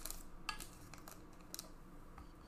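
Thin plastic trading-card sleeves and holders rustling and clicking as a card is handled, in three short rustles: at the start, about half a second in, and about a second and a half in.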